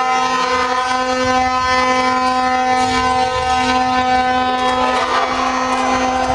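A single-pitched horn blown in the hall in one long, steady drone with only brief breaks, over general crowd and game noise.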